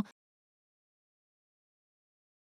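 Silence: the audio track is empty after the last syllable of a voice cuts off at the very start.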